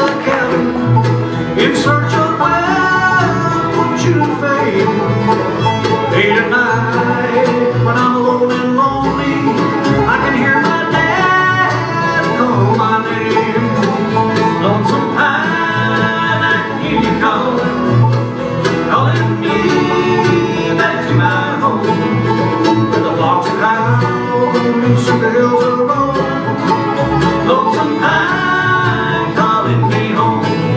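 Live acoustic bluegrass band playing, with banjo, mandolin, acoustic guitars and fiddle, and a male voice singing.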